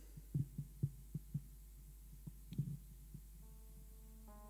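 A few soft, low thumps at irregular spacing, with a held keyboard chord coming in near the end.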